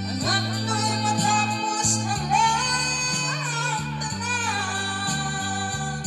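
A woman singing karaoke into a handheld microphone over a backing track, holding long notes that waver in pitch.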